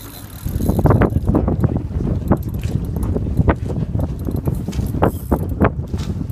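A PENN spinning reel working under heavy load during a fight with a big fish: irregular clicking and grinding from the reel over low rumbling wind and handling noise. It starts about half a second in.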